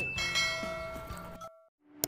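Bell-like chime sound effect from a subscribe-button animation: several tones ring together and fade, then cut off suddenly about one and a half seconds in.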